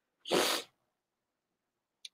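A woman's single short, sharp breath, a rush of air lasting under half a second near the start.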